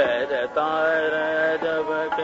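Male Hindustani classical voice singing khayal in Raag Darbari: sliding ornaments at the start, then a long held note over a steady drone.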